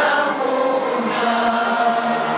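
A large mixed group of young men and women singing a song together, many voices held on long sustained notes.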